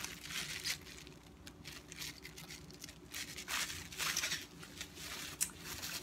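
Thin plastic bag crinkling and rustling in the hands in short, irregular bursts as it is turned over.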